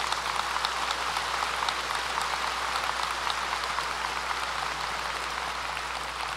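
Audience applauding: a steady, dense patter of many hands clapping, easing a little near the end.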